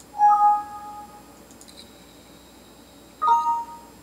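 Two short computer alert chimes about three seconds apart, each a bright pitched ding that fades within about a second, with a faint high-pitched tone between them.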